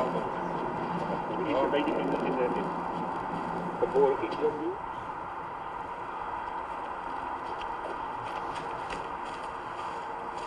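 Film soundtrack played over room speakers: indistinct voices about a second and a half in and again about four seconds in, over a steady hum. A low tone in the hum stops about halfway through.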